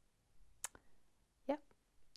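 A single sharp click about half a second in, in a quiet small room, followed by a soft spoken "yeah".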